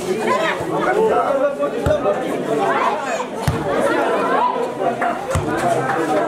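Many voices of players and spectators chattering and calling out over one another during a volleyball rally. Three short knocks, about two seconds apart, cut through the voices; these are likely the ball being struck.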